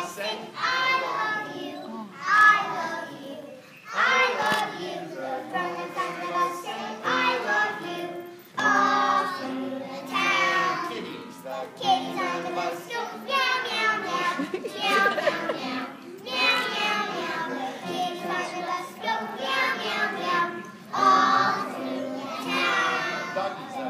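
A group of preschool children singing a song together in unison, phrase after phrase with brief pauses between lines.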